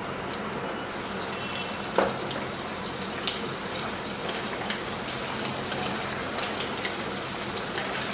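Cubes of paneer sizzling in hot oil in a ceramic-coated frying pan: a steady hiss with scattered small crackles and pops, and one sharper knock about two seconds in. A wooden spatula turns the cubes in the oil.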